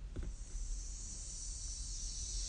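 Steady high hiss of background or recording noise that grows a little stronger about half a second in, with a faint low hum beneath.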